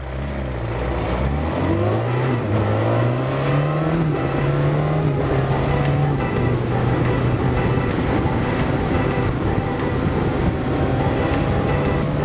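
Yamaha FZX750's inline-four engine pulling away on the move. Its pitch climbs and drops back twice through upshifts in the first four seconds, then it runs steady at cruising speed under wind noise on the onboard microphone. The carburettors have been freshly sorted to run properly.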